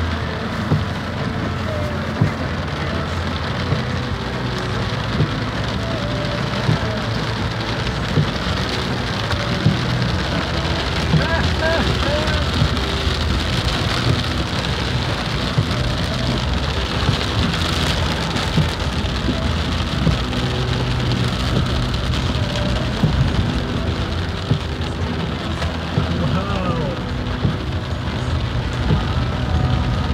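Heavy rain on a car's roof and windscreen, heard from inside the cabin over the low steady hum of the moving car. The windscreen wipers knock at a regular beat about every second and a half.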